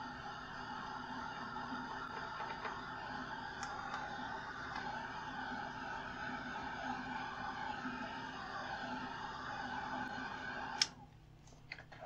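Handheld hair dryer running with a steady whir as it dries wet watercolor paint, then cut off suddenly with a click near the end.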